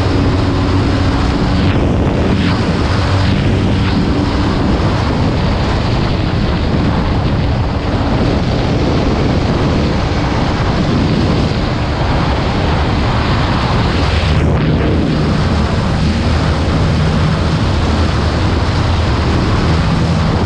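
Heavy wind blast on the microphone from a Bajaj Pulsar NS200 ridden at high speed, with the bike's single-cylinder engine droning steadily underneath.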